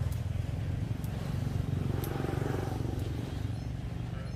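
A motor running steadily with a low, even hum, and a few faint clicks over it.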